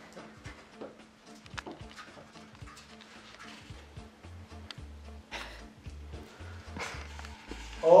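Faint scattered taps and handling noises over a steady low hum, with background music coming in about halfway, marked by a low pulsing bass. A man's loud exclamation starts right at the end.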